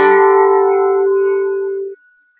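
Acoustic guitar's closing chord strummed once and left to ring, the notes fading slowly, then stopping abruptly just before the end.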